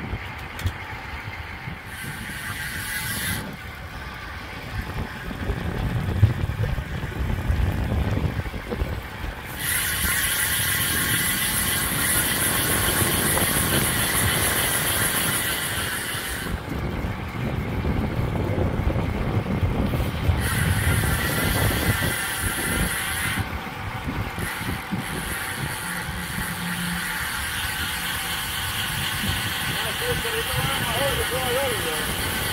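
Wind buffeting the microphone of a camera riding along on a moving road bike, an irregular low rumble. Twice a steady high buzz cuts in and stops abruptly: once about ten seconds in, lasting some seven seconds, and again shortly after twenty seconds in.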